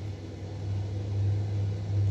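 A steady low mechanical hum that grows a little louder about a second in.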